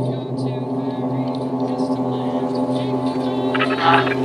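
Music: the instrumental intro of a hip-hop track, a sustained low droning chord, with a beat's percussion coming in near the end.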